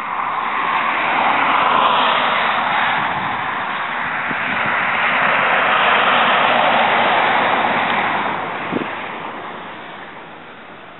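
Cars passing on a highway: tyre and road noise swells up twice, loudest about two seconds in and again around six to seven seconds, then fades near the end.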